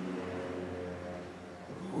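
A low steady hum with several faint held tones that fade slightly toward the end.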